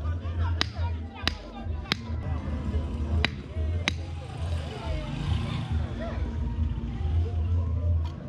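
Five sharp knocks in the first four seconds: a hand-held club pounding a tamping stick down into an upright metal pipe, packing the charge of a homemade pipe firecracker. Background music with a pulsing bass beat plays throughout.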